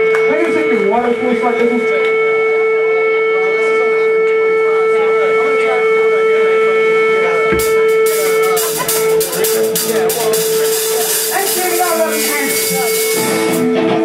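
Live rock band playing: an electric guitar holds one steady sustained tone, like feedback, over guitar and bass playing. About halfway through the drums come in with a cymbal wash and sharp hits that cut off abruptly just before the end.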